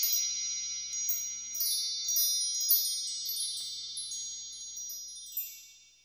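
Shimmering, high-pitched chime sound effect for an intro animation: many ringing tones with a scatter of sparkling strikes, slowly fading and dying out near the end.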